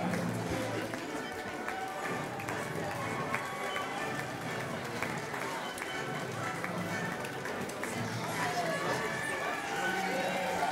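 Crowd murmur and chatter in a large hall, with music playing underneath.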